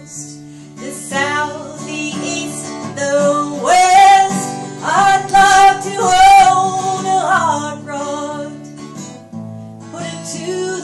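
A woman singing to her own strummed acoustic guitar, with long held notes in the middle of the phrase.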